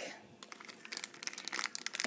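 Thin clear plastic bag crinkling as it is handled: a run of small crackles, quiet at first and busier in the second half.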